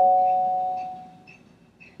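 A bell-like chime from an Alexa skill played through a smart display's speaker. Two tones sound together and ring out, fading away over about a second and a half.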